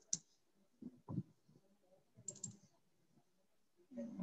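Computer keyboard keys clicking faintly: a few scattered key presses, then a quick run of several a little over two seconds in.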